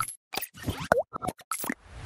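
Animated-logo sound effects: a quick string of short pops and plops, one with a swooping, bending pitch about a second in, then a whoosh that starts rising near the end.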